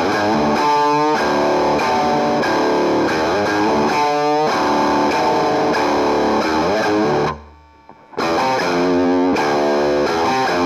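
Fender Jaguar electric guitar through distortion playing a repeating riff, with the pitch wavering in two stretches, about one and four seconds in. The playing stops abruptly a little after seven seconds and starts again about a second later.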